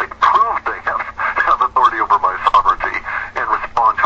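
Speech only: a person talking without pause, thin-sounding as over a radio broadcast, over a faint steady hum.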